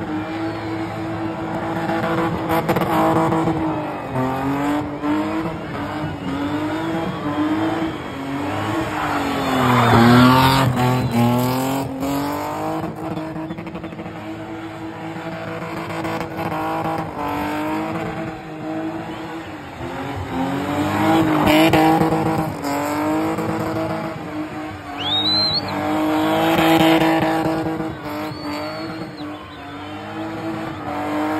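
BMW E30's engine revving hard, its pitch rising and falling again and again as the car is spun in circles, with tyres squealing and skidding under wheelspin. The revs climb highest about ten seconds in and again just past twenty seconds.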